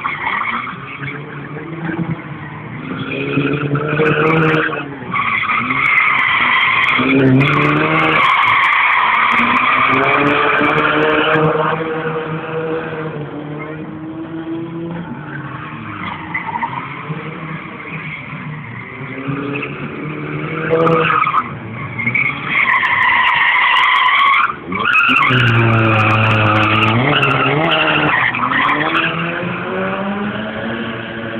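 A car being driven hard, its engine revving up and down while its tyres squeal in long skids. The squeal comes in two long loud stretches, each several seconds, with the engine still audible between them.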